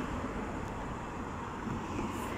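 Steady road traffic noise: cars driving on a nearby road, an even rush with no distinct events.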